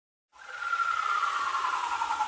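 Sound-effect intro to a hip hop track: a hiss that starts suddenly about a third of a second in, with a steady high tone and a second tone gliding slowly down beneath it.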